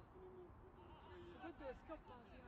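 Faint, distant voices calling out across the football pitch, over a low rumble.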